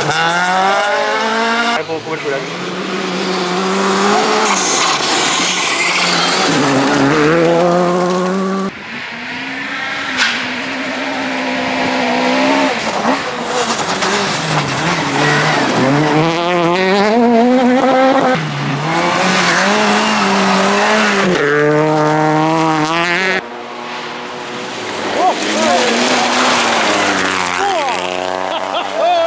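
Small rally cars, a Ford Fiesta and a Peugeot 208 among them, driven hard one after another on a loose gravel stage. The engines rev high and drop again and again as the drivers shift and brake into the corner, with gravel and stones spraying under the tyres. The sound changes abruptly several times as one car gives way to the next.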